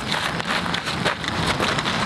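Boots shuffling and crunching on gravel with rustling gear, a dense run of small crunches and clicks.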